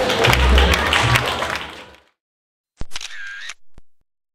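Audience applause fading out over about two seconds. After a short silence comes a single-lens reflex camera shutter sound effect: a sharp click, a brief whirr, and a final click.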